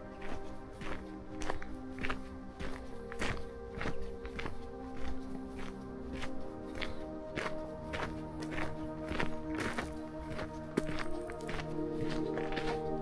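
Footsteps on a gravel path at a steady walking pace, a little under two steps a second, over background music with long held notes.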